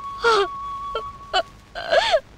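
A young woman crying, short sobbing wails broken by catches of breath, each cry falling in pitch.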